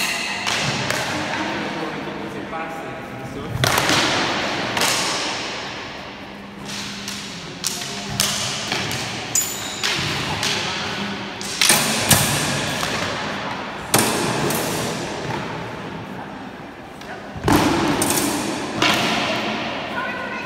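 Training swords built like the 1796 pattern heavy cavalry sword knocking together in sparring: sharp clashes every second or few, irregular, ringing on in the echo of a large hall.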